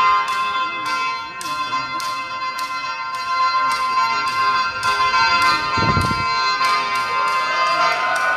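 Isan pong lang folk ensemble playing live, with a steady beat of sharp struck notes about twice a second over sustained held tones and a wavering lower melody line. A deep thump comes about six seconds in.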